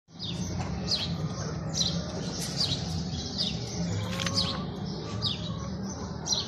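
A small bird chirping repeatedly: short, high chirps that slide downward, roughly one or two a second. A steady low rumble runs underneath.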